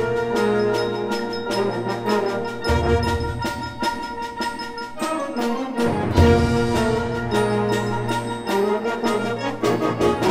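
Symphonic concert band playing the opening of a piece: full ensemble of brass, woodwinds and percussion, with sustained low notes and frequent short accents.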